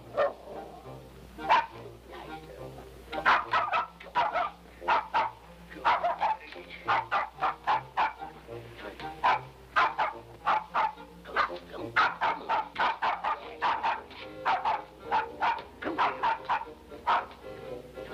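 A small dog barking over and over: short, sharp yaps coming in quick runs of several at a time, the first about a second and a half in.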